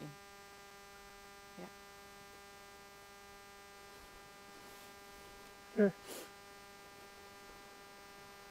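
Steady electrical hum and buzz in the recording: a fixed comb of evenly spaced tones that does not change. Two short spoken words come about six seconds in.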